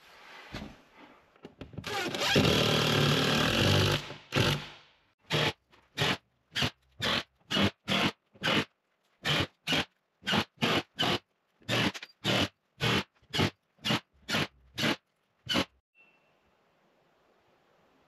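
A laugh over loud handling noise, then a rapid string of short, abruptly cut snatches of scraping and handling noise from work on the scaffold at the top of the plywood wall, about two a second, as in a sped-up, chopped time-lapse. Faint room tone in the last two seconds.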